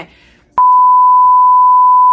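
A steady, loud, single-pitch censor bleep. It cuts in about half a second in and holds for about a second and a half, covering a word in the speech.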